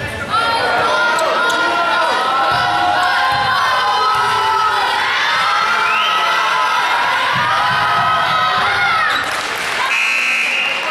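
Gym crowd cheering and yelling, many voices at once, with a basketball bouncing on the court now and then. The noise jumps up about a third of a second in and eases slightly near the end.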